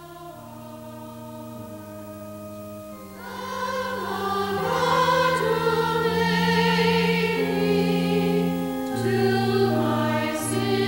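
Background choral music: a choir sings soft held chords that swell louder about three seconds in.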